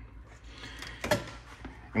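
Quiet room noise with a single light click about a second in.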